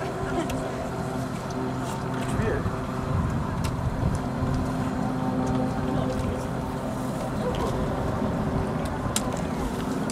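A steady engine drone, holding one pitch throughout, over rough low rumble, with a few faint voices.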